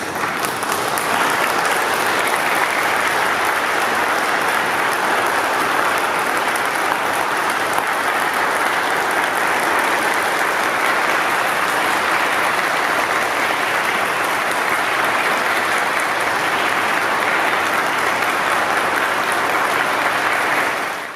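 Audience applauding steadily, breaking out as the final piano chord dies away at the very start.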